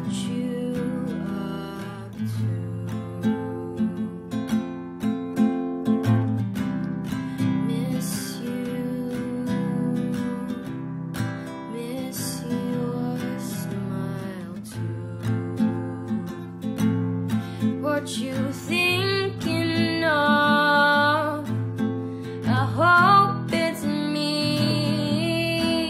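Acoustic guitar strumming chords as the intro of an original song, with a singing voice coming in near the end.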